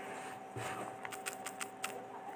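Quiet room with a steady faint hum and a quick run of light clicks or taps in the second half.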